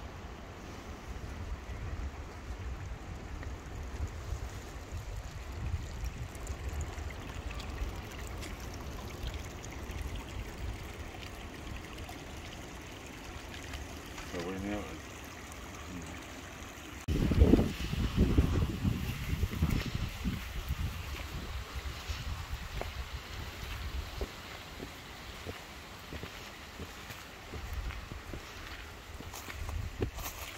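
A small garden stream trickling, under steady wind noise on the microphone, with brief voices about two-thirds of the way through.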